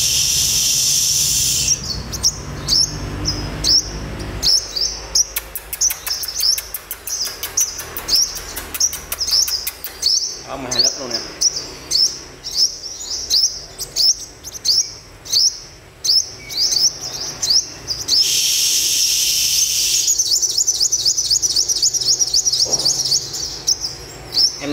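A caged male sunbird calling: short, sharp, high chirps repeated two or three times a second, with a harsh hissing buzz in the first two seconds and again about 18 seconds in, and a rapid high trill near the end.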